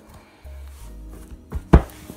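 A hardcover book closed and set down on a tabletop: a light knock, then a single sharp thud near the end.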